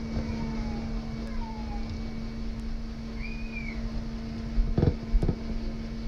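Metal bundt pan handled and rubbed by a gloved hand while being greased, with two knocks close together near the end and a few faint high squeaks over a steady low hum.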